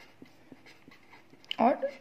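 Faint scratching and light ticks of a pen writing on paper, then a woman's voice near the end.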